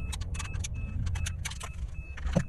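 Car cabin noise while driving: a steady low rumble of engine and road, with many quick, light rattling clicks over it.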